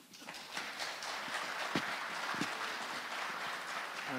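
Audience applause: a steady patter of many hands clapping, with two footfalls on the stage about two seconds in.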